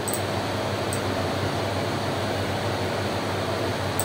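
Steady whooshing noise of fans or air conditioning, with no change in level.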